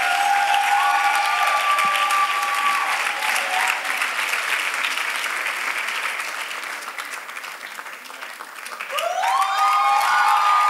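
Audience applauding and cheering to welcome a guest, with long, high cries from the crowd over the clapping in the first few seconds and again near the end; the clapping dips briefly before swelling back up.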